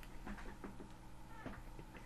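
A man's quiet, stifled laughter through a hand held over his mouth: a run of short, faint squeaky breaths.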